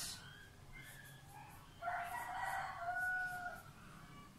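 A rooster crowing once, faint, starting about two seconds in and lasting nearly two seconds.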